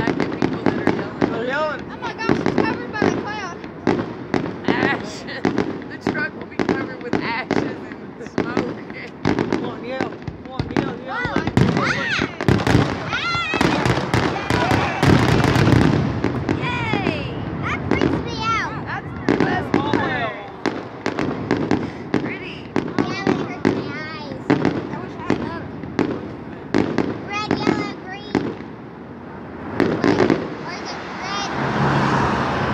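Aerial fireworks display: a rapid, continuous series of bangs and crackling bursts, densest and loudest about halfway through and easing off near the end.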